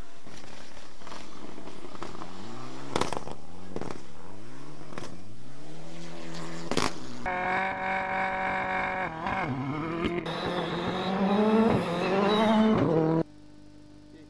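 Rally car engines at full throttle on gravel stages: a turbocharged Mitsubishi Lancer Evolution X accelerates hard through its gears, its revs rising and dropping with each upshift, with a few sharp cracks. About seven seconds in, a rally car holds its revs steady at a stage start and then launches with climbing revs. The sound cuts off suddenly near the end, leaving a faint steady hum.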